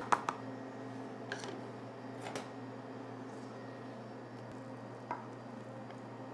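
A few light clicks and knocks as the plastic blade is lifted out of a mini food processor bowl, then sparse faint ticks of handling over a steady low hum of room tone.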